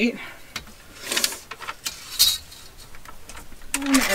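A folded sheet of paper being handled and its crease pressed flat by hand on a wooden table: a few short rustles and scrapes, the sharpest about two seconds in.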